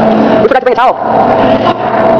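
A short, high-pitched shout from a young woman about half a second in, over a loud steady hum.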